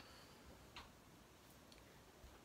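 Near silence: room tone with a few faint clicks, one about a second in and fainter ones near the end.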